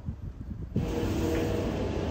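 Wind buffeting the microphone in low gusts, then about three quarters of a second in a sudden switch to a steady mechanical rumble with a faint hum: the spinning-house ride running.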